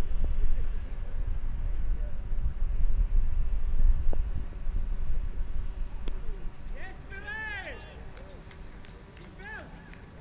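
Outdoor cricket-ground sound with wind rumbling on the microphone through the first part. A single sharp knock about six seconds in, as a delivery comes through to the batsman and wicketkeeper, is followed by a few high calls from the players on the field.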